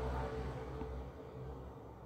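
Squid, shrimp and mussels frying in oil in a stainless steel pan, stirred with a wooden spoon; the frying noise eases off after about a second.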